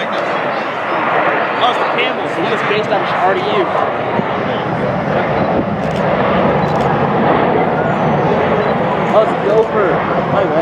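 Jet engines of a Frontier Airbus A320 on its landing roll, a steady rushing noise that grows heavier about halfway through, with indistinct voices of people talking over it.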